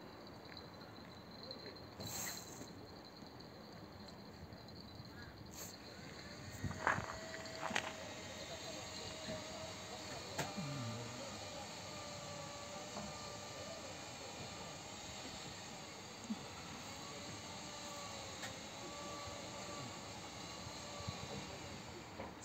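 Quiet outdoor ambience at the water's edge, with a few soft clicks and a faint, wavering distant tone through the middle.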